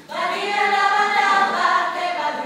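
Mixed a cappella jazz vocal group, mostly women's voices, singing a bossa nova in close harmony. After a momentary break the voices come in together on a new phrase and hold full chords.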